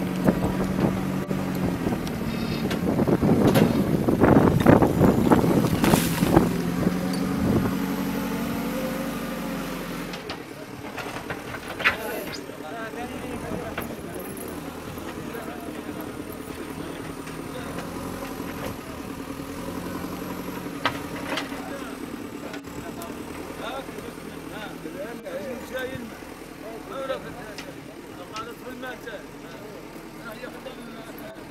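Diesel engine of a JCB backhoe loader running, with loud knocking and clatter during the first several seconds as its bucket works rock and earth. After that the engine runs on more quietly, with voices in the background.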